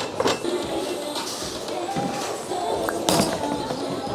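Background music playing in a large, echoing bowling alley, with a sharp knock about three seconds in.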